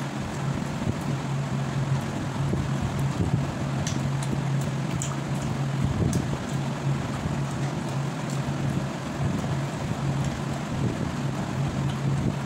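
A steady low hum under a constant rushing noise, with a few faint clicks about four to five seconds in.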